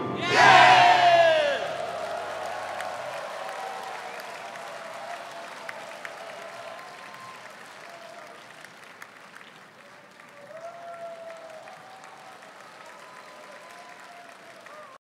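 An audience cheers and applauds as a choir's final chord ends: whooping shouts are loudest in the first second or two, and the applause then dies away gradually, with a few faint voices near the end.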